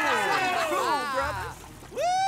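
Several cartoon voices whooping together in excitement, their pitches sliding down and dying away after about a second.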